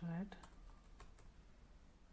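Computer keyboard typing: a few faint, separate keystrokes.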